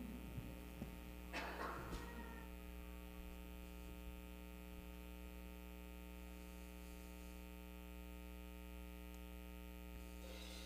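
Steady electrical mains hum from the sound system, with a brief noise about a second and a half in.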